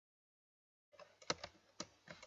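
Computer keyboard typing: silence, then a short run of keystrokes from about a second in, with two sharper clicks among them.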